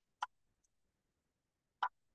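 Two short, sharp clicks about a second and a half apart, with near silence between them.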